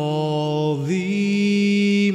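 A solo voice holding a long sung note of a slow hymn, stepping up to a higher note about halfway through and holding it, with live piano accompaniment.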